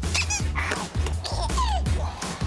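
Background music with a steady bass line, overlaid by short high-pitched squeaks that rise and fall in quick succession.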